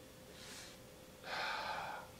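A person drawing in air over a glass of red wine while nosing it: a faint short inhale, then a longer, louder inhale of just under a second in the second half.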